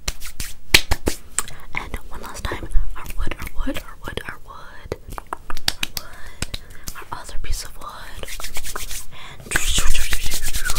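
Fast, close-miked hand sounds: a quick run of snaps, flicks and taps making sharp clicks, with soft whispering. Near the end the palms rub together quickly in a dense, fast rustle.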